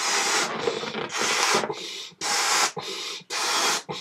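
A person blowing up a latex balloon by mouth: about four long, breathy blows of air into the balloon, with short pauses for breath between them.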